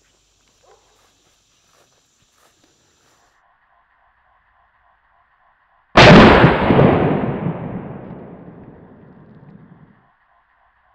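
A single shot from a 28-gauge TriStar Viper G2 semi-automatic shotgun firing a Brenneke slug, about six seconds in. It is very loud and sudden, and its echo dies away over about four seconds.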